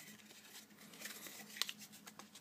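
Faint crinkling and small clicks of a plastic-and-card battery blister pack being handled and turned over in the hand, with a sharper click about one and a half seconds in.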